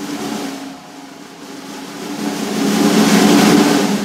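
Drum roll on cymbals and snare swelling steadily louder to a peak near the end, over a low held note, building up to the band's entrance.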